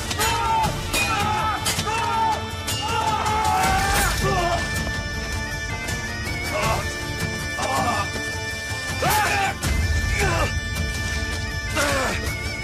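Sword-fight sound effects: repeated sharp clashes and blows, with men's shouts and grunts, over dramatic music.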